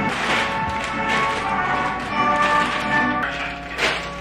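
Background music: held chords with a few light percussive taps.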